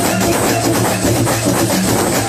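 Live Moroccan chaabi music played loud through a PA: electronic arranger keyboard with hand-drum percussion keeping a steady dance rhythm over a repeating bass line.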